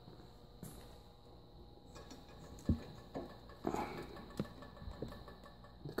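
Faint handling noises: a few soft scattered knocks and short rustles as a plasma cutter's rubber-sheathed torch lead and cables are moved about, with a faint steady high hum underneath.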